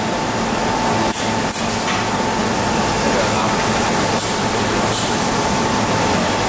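Steady machinery noise of workshop equipment running, a continuous drone with a constant high whine over it, with a few faint clicks.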